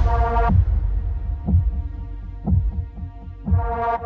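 Trailer score: low, heartbeat-like thuds about once a second, each dropping in pitch, under a sustained held chord that fades out and swells back near the end. Softer thuds fill in between the main beats partway through.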